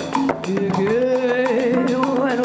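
Live Latin-flavoured song: a woman's voice holds a long note with vibrato over piano accompaniment, with the bass thinning out beneath it.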